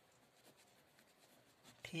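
Pen writing on lined notebook paper: faint, short scratching strokes as a word is written out by hand.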